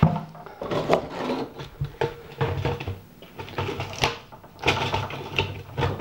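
Irregular clunks, knocks and scrapes as a waste-oil drain barrel and its funnel top are handled and set back in place.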